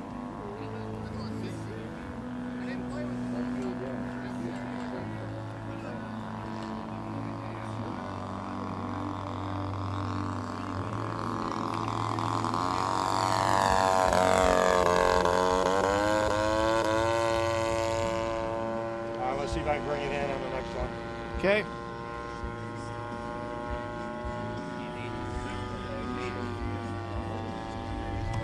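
A radio-control model airplane's 20cc two-cylinder gasoline engine runs in flight. It grows louder as the plane makes a low pass about halfway through, and its pitch drops as the plane passes and moves away. The note then holds steady.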